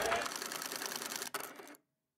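Film projector sound effect: a rapid mechanical clatter that fades, gives one sharp click and then cuts off to silence shortly before the end.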